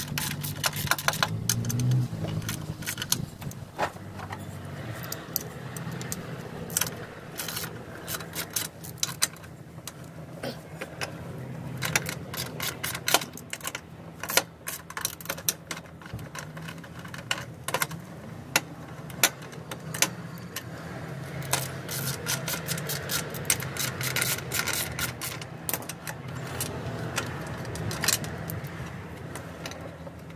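Ratchet spanner clicking in quick irregular runs, with metal tools clinking, as bolts on a ride-on mower's frame and transaxle are undone.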